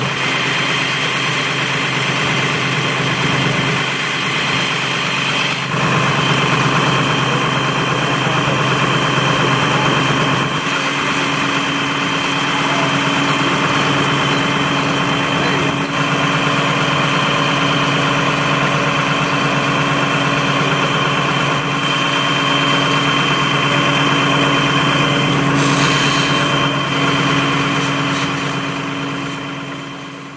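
Fire engine engines running steadily at the fire scene, a constant engine hum with steady tones. The note shifts slightly about eleven seconds in, and the sound fades out at the very end.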